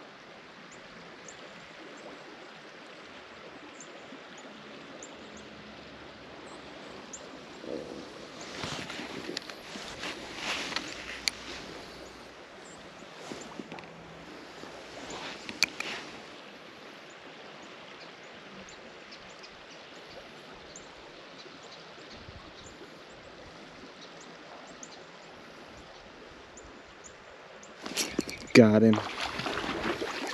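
Small creek water running steadily, with a few brief louder rustling noises in the middle.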